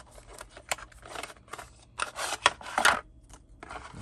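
Small cardboard product box being opened by hand: card flaps and the inner tray scraping and rustling, with light clicks and taps on a wooden table, busiest about two to three seconds in.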